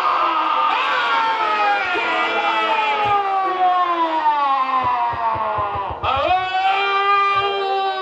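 A man's voice through a stage microphone in two long, drawn-out cries, each held for several seconds and slowly falling in pitch; the second starts about six seconds in.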